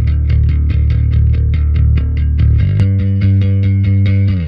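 Electric bass guitar phrases played back from a Kontakt sample library's bass instrument: a fast, even run of picked notes, shifting to a new pitch about two-thirds of the way through.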